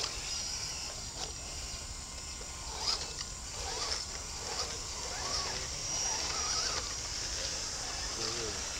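Electric motors and geartrains of several RC scale crawlers whining, rising and falling in pitch with throttle as they climb a muddy trail. Under them runs a steady high insect buzz from the surrounding forest.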